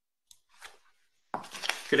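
A few faint clicks and rustles at a computer microphone, then a sudden rise in noise about a second and a half in, just before a man starts to speak.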